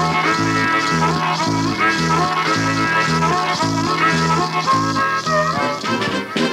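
Upbeat band music in a bouncing polka-style rhythm: a bass line alternating between two notes about twice a second, with a melody above it.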